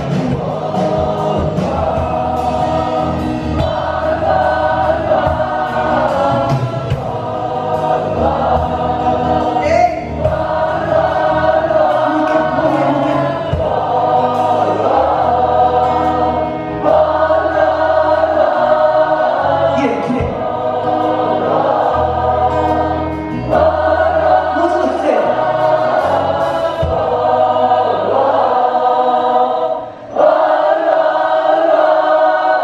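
Live band with acoustic guitar and drums playing while many voices sing together in long phrases: a crowd singing along with the band.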